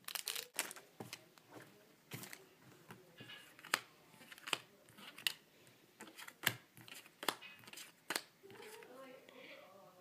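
Foil booster-pack wrapper crinkling and tearing, then trading cards flicked and slid against one another in a scatter of small clicks and snaps. A faint low voice is heard briefly near the end.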